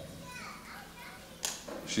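Faint children's voices in the hall during a pause in a man's speech into a microphone, with one brief sharp noise about one and a half seconds in, just before he speaks again.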